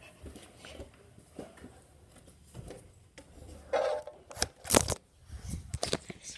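Footsteps on stairs and rustling handling of a handheld phone, with a louder flurry of knocks and rustles about four to five seconds in.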